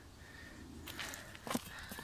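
Quiet handling and movement noise: a low rustle with a few light clicks and knocks in the second half.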